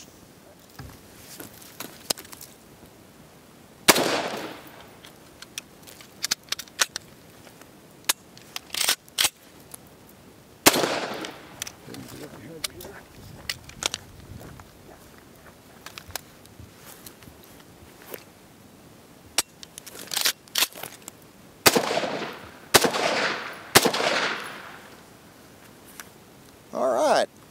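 Robinson Armament XCR 5.56 mm rifle fired one shot at a time with M193 ammunition straight out of a covering of sand, each shot sharp and echoing. There is a shot about four seconds in and another near eleven seconds, then a quicker string of shots near the end, with small clicks and rattles in between. On the first two shots the receiver popped open, which the shooter suspects was his own error in closing it after swapping lower receivers.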